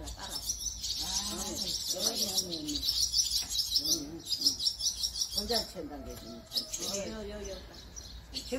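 Barn swallows twittering at their mud nest, a rapid, high, continuous chatter that thins out after about five and a half seconds.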